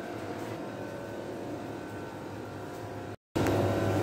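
Steady hum of wall-mounted window air conditioners, with faint steady whine tones over it. The sound drops out for a moment about three seconds in and comes back louder.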